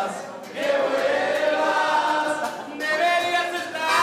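Live band music with several men singing a melody together into microphones, holding long notes.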